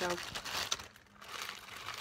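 A clear plastic bag of coconut pieces crinkling as it is picked up and handled, with a brief lull about a second in.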